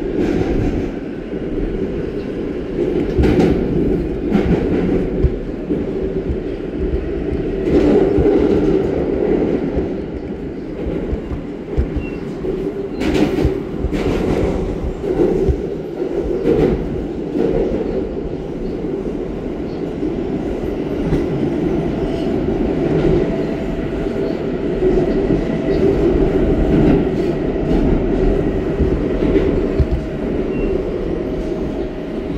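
R160 New York City subway car running at speed through a tunnel, heard from inside the car: a steady rumble of wheels on rail, broken by occasional sharp clacks over rail joints. A faint steady whine joins in about twenty seconds in.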